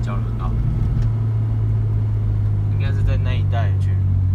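Honda Integra DC5 (Acura RSX) four-cylinder engine with an aftermarket exhaust, a steady low drone heard from inside the cabin while cruising. Its pitch rises a little about a second in, then holds.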